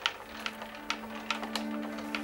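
Handwheel-driven mobile archive shelving ticking and clicking irregularly, about two to three clicks a second, as the wheel is turned to move the stacks. Soft background music with held notes comes in shortly after the start.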